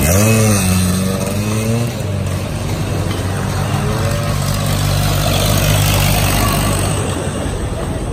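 Suzuki Xipo (Satria 120) two-stroke motorcycle engine accelerating away, its pitch rising and then dropping in the first two seconds. It then settles into a steady drone that runs for most of the rest.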